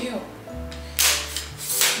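A brand-new tripod's telescoping leg sections being pulled out, stiff because the tripod is new: two short scraping rubs of the tubes sliding, one about a second in and one near the end.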